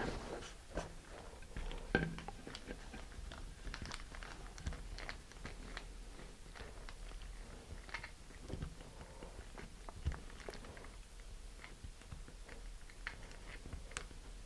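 Faint crinkling and rustling of a clear plastic bag under fingers as it is pressed and rubbed over a plastic nose cone, with scattered small clicks and a couple of slightly louder handling knocks, about two seconds in and near ten seconds.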